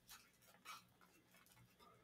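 Near silence, with two faint soft rustles as a baked bun is peeled open by hand on a plate.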